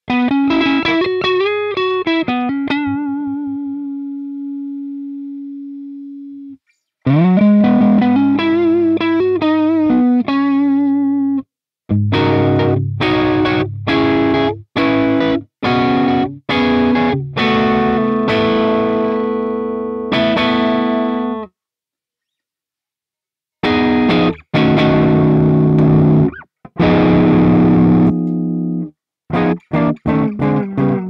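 Electric guitar played through a Hotone Mojo Attack pedalboard amp. It opens with lead licks that have string bends and vibrato and a long note left to ring out, then moves to strummed chords. The sound stops dead twice, once in a silence of about two seconds.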